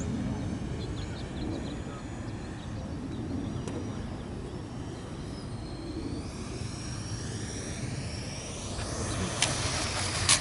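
Electric ducted fan of a Freewing F-104 Starfighter RC jet whining as it comes in to land, the high whine rising in pitch and growing louder over the last few seconds. A couple of sharp knocks near the end as it touches down on the pavement.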